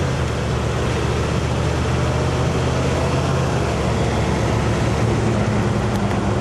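Engine and road noise inside the cab of a moving military vehicle, a loud, steady drone. The engine note rises about five seconds in.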